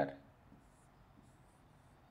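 Faint scratching of a pen drawing strokes on an interactive whiteboard, a few light high-pitched strokes after a spoken word trails off at the start.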